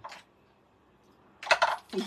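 A quick cluster of sharp clicks and clinks about one and a half seconds in, from small bottles being picked up and handled on a craft table.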